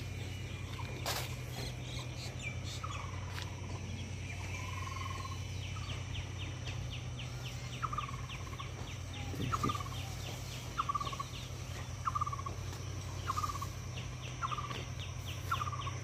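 A bird repeating a short falling call about every second and a bit, over a fast, high ticking of about eight ticks a second that comes and goes, with a steady low hum underneath.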